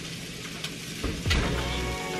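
Food sizzling in a frying pan on the stove, a steady hiss, with a few light clicks about a second in.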